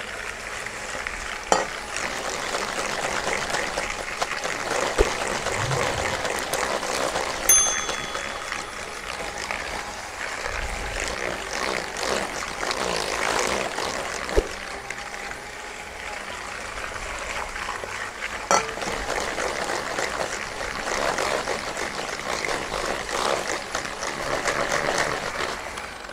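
Electric hand mixer whisking a creamed butter-and-sugar mixture as the eggs are worked in, a steady whirring churn with a few sharp clicks along the way.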